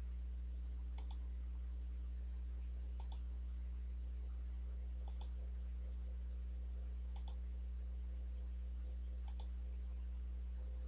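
Steady low hum with a computer mouse clicking about every two seconds, each click a quick double tick.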